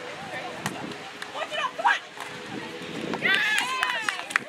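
Women's voices calling out on a beach volleyball court, with a few sharp hits of the ball; about three seconds in, several high voices shout loudly together as the point ends.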